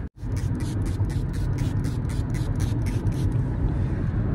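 A pump-bottle setting spray worked in a quick run of short sprays, about five a second, that stops shortly before the end. Under it is the steady low rumble of a car on the road, heard from inside the cabin.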